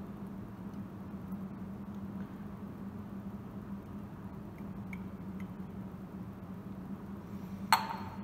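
Quiet pouring of water from a glass beaker into a glass Erlenmeyer flask over a steady low hum. Near the end there is a single sharp glass clink as the beaker is set down.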